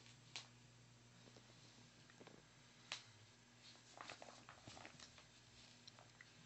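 Faint chewing from a teething wolfdog puppy gnawing a rope toy and tennis ball: a few soft clicks and rustles, with a small cluster about four to five seconds in, over a low steady hum.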